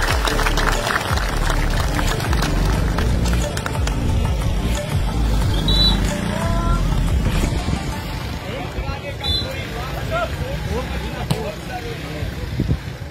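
Large outdoor crowd at a volleyball match: a loud, steady din of many voices with scattered shouts, and a few sharp knocks such as one near the end.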